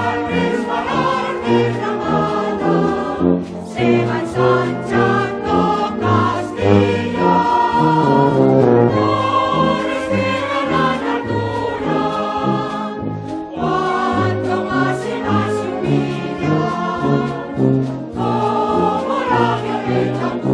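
Mixed choir singing a hymn with full voices, accompanied by a concert wind band whose low brass marks a steady beat.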